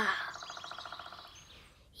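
A cartoon bird trilling fast and evenly, fading away over about a second and a half. A child's sung word ends right at the start.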